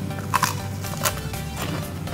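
Soft background music, with two or three short crunches as a piece of liege waffle is bitten and chewed.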